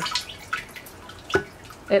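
Rainwater trickling from a corrugated downspout hose through the mesh screen into a rain barrel, with a few faint drips and one clearer drip about one and a half seconds in.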